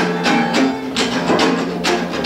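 Acoustic guitar strummed in a steady rhythm with sharp, percussive strokes, playing an instrumental gap between sung lines of a song.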